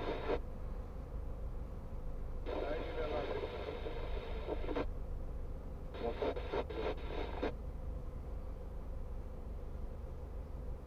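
A voice from the car radio in three short stretches, over the low steady hum of the car idling, heard inside the cabin.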